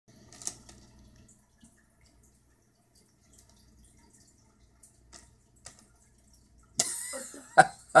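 Quiet at first with faint scattered clicks, then about seven seconds in a loud, breathy burst from a person's voice, with a sharp peak just before speech begins.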